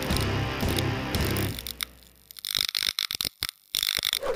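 Intro music sting that fades out over about two seconds, followed by a rapid run of sharp crackling clicks.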